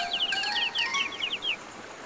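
Cartoon chicks peeping: a quick run of short, high chirps that drifts slightly lower in pitch and stops about one and a half seconds in, over soft background music.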